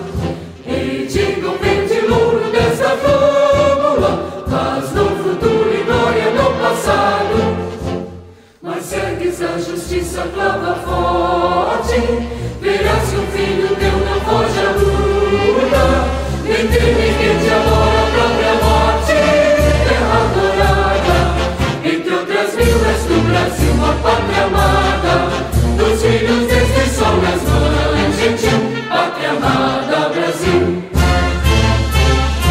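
An anthem sung by a choir over instrumental accompaniment. It breaks off briefly about eight seconds in, then goes on with a strong, even bass beat underneath.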